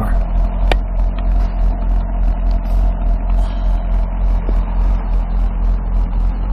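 2012 Corvette Grand Sport's LS3 V8 idling steadily, heard close behind its quad exhaust tips: an even, deep drone.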